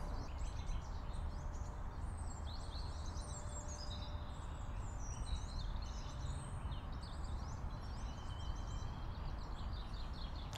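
Outdoor ambience picked up by a Clippy EM172 lavalier mic on a Rode RodeLink wireless system in a noise-floor test: several birds chirping and whistling in quick short phrases over a low, steady rumble.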